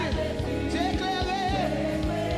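A woman singing a Haitian Creole gospel worship song over live band accompaniment with a steady drum beat, holding her notes with a wavering vibrato.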